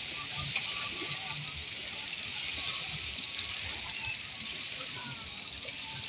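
Seaside ambience: a steady wash of small waves at the shore, with indistinct voices of people in the background.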